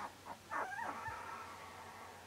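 A young puppy whimpering faintly: a short, wavering whine about half a second in that trails off.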